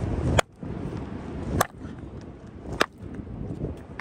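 Three sharp hammer strikes on a beach rock nodule, about a second apart, splitting it open to look for a fossil inside.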